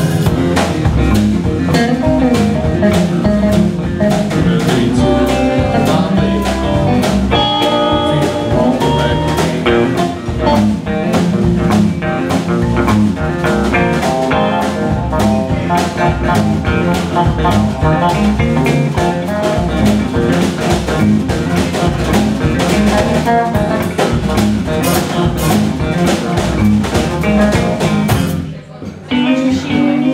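Live blues band playing an instrumental passage: electric guitars over bass and drum kit. The band stops briefly near the end, then comes back in.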